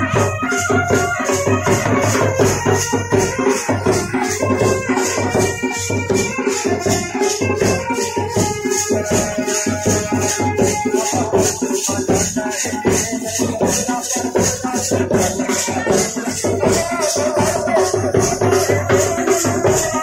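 A band baja wedding band playing dance music without a break: drums and a fast, even rattling percussion beat under a moving melodic line.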